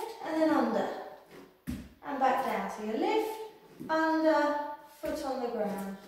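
A voice that rises and falls in pitch, some notes held briefly, with one sharp knock a little under two seconds in.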